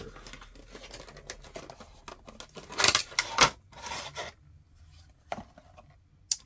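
Packaging being opened by hand: crinkling and rustling, with two louder tearing rips about three seconds in, then a few small clicks.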